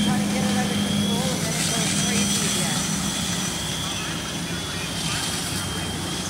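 Fire engines' engines running their pumps with a steady drone and hum. A hiss of hose spray rises over it from about one and a half to three seconds in, with faint voices under it.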